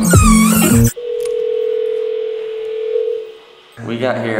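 Background music cuts off about a second in. A door intercom then gives one steady electronic ringing tone, held for about two and a half seconds, heard through the intercom's small speaker.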